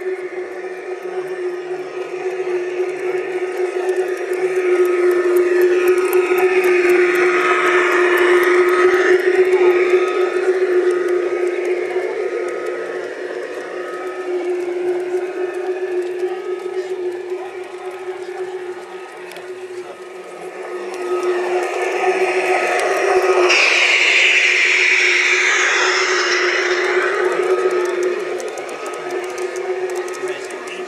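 LGB garden-scale model trains running on outdoor track: a steady motor hum with rolling wheel noise that swells twice as a train passes close by.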